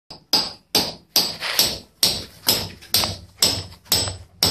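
Hammer driving half-inch rebar pins into the edge of a saw-cut concrete floor slab, pinning it so the concrete patch will bond. About ten blows in a steady rhythm, roughly two and a half a second, each dying away quickly.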